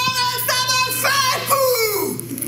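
A high voice singing long held notes, the last one sliding down in pitch near the end.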